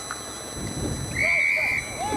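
Umpire's whistle blown in one steady high note lasting about half a second, starting just over a second in, among players' shouts.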